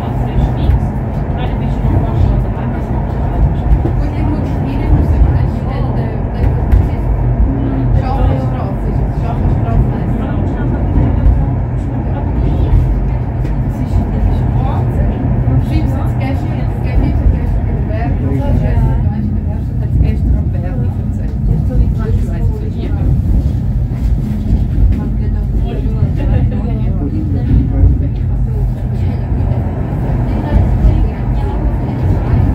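Stoosbahn funicular car running up a steep rock tunnel, heard from inside the cabin as a loud, steady low rumble.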